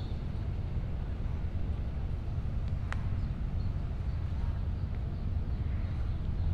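Steady low rumble of wind buffeting the microphone outdoors, with one faint click about three seconds in.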